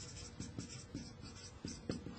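Marker writing on a whiteboard: a quick run of short, faint strokes and taps as letters are written, one a little louder just before the end.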